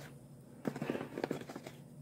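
Football trading cards handled in the hand: a few soft clicks and rustles of card stock in the middle of a quiet stretch.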